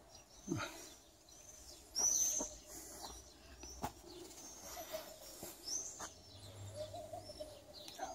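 Small birds chirping outdoors: scattered short, high notes throughout, the loudest chirp about two seconds in.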